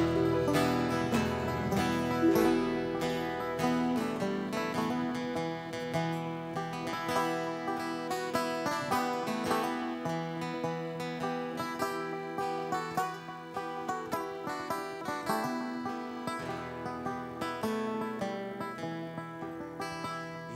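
Live folk band playing an instrumental passage on accordion, harp, fiddle, acoustic guitar and bass guitar.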